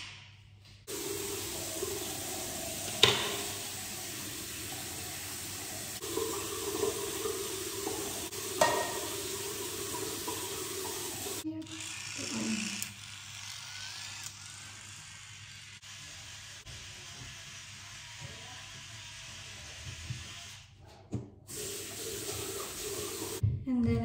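Tap water running into a bathroom sink for about ten seconds, with two sharp knocks along the way. It then stops, leaving quieter splashing and handling sounds as a face is washed.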